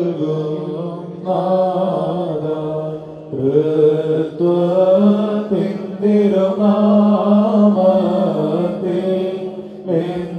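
Syriac Orthodox liturgical chant: a man's voice, amplified by microphone, sings long held notes in short phrases with brief breaks about a second in and about three seconds in.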